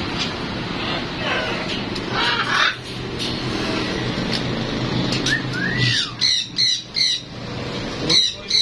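Blue-and-yellow macaw calling: a harsh squawk a couple of seconds in, a short rising-and-falling whistle, then a run of short squawks about three a second near the end.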